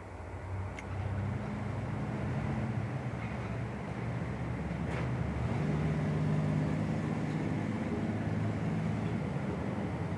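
Motor vehicle engine running with road noise: a low, steady drone that rises a little in pitch and level about five seconds in, then eases back.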